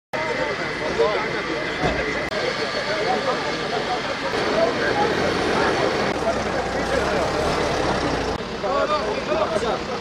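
Road traffic: vehicle engines running, with a heavier low rumble from about six to eight seconds in, under scattered men's voices.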